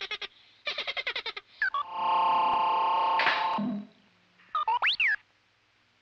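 Synthesized R2-D2-style robot droid chatter. It opens with a burst of rapid warbling beeps, then a steady buzzy tone held for about two seconds, then a couple of quick whistles that swoop up and down near the end.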